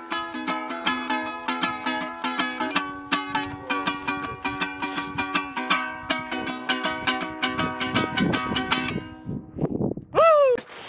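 Ukulele being picked in a quick, continuous run of plucked notes, stopping about nine seconds in.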